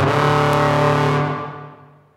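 Tenor trombone played through a chain of effects pedals, including fuzz, sounding one held low note with many overtones. The note fades out over the last second.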